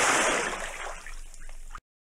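Water splash sound effect: a loud rush of splashing, sloshing water that fades away and then cuts off abruptly near the end.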